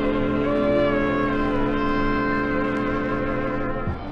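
Big band dance orchestra holding a long, steady chord of several held notes, which drops away just before the end.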